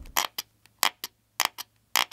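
Sharp clicks in quick pairs, about one pair every half second, as a metal pry tool catches and snaps against the phone's raised camera lens rings; the lenses stay firmly attached.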